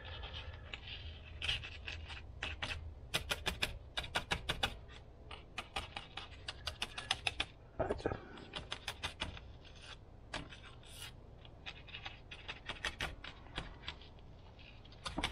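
Small paintbrush dabbing and scrubbing paint on a cardboard palette: runs of quick, sharp taps and scratches, several to the second, with short pauses between runs.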